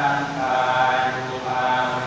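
Buddhist monks chanting a Pali blessing together in unison, on long, steady held notes.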